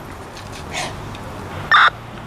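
A single short, sharp bark or yelp from a police K9 dog near the end, over low outdoor background.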